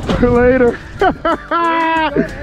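A man's voice making drawn-out wordless laughing sounds and calls, in three bursts, the last one a held note.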